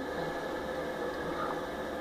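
Steady low background hiss with no distinct sound: room tone during a pause in speech.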